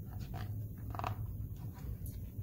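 Soft handling rustle of a hardcover picture book's paper pages being turned by hand, over a steady low room hum, with a brief faint sound about a second in.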